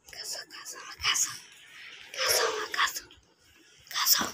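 Soft whispered voice in a few short, breathy bursts, with a sharp click about a second in.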